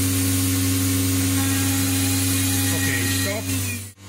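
COSMEC FOX 22 S CNC machining centre running with a steady low hum and hiss; a steady tone in it fades out about three and a half seconds in, and the sound cuts off abruptly just before the end.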